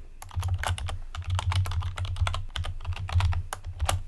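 Typing on a computer keyboard: an uneven run of key clicks, several a second, as a short file path is keyed in.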